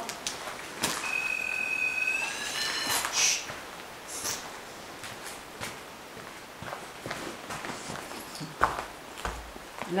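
A ghost-hunting detector sounds its electronic alarm as it is handled. The person placing it sets it off. The alarm is a steady high beep of about a second, then a second tone that climbs slightly in pitch for about another second. Shuffling and handling noise follow, with a couple of dull knocks near the end.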